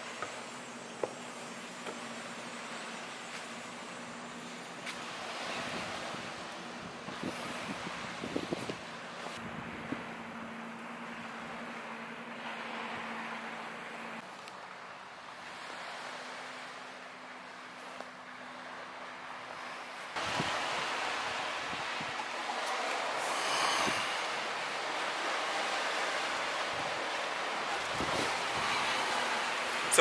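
Steady outdoor background noise of wind and distant traffic, with a few scattered knocks of footsteps on wooden walkway boards and tower stairs. It grows louder about two-thirds of the way in.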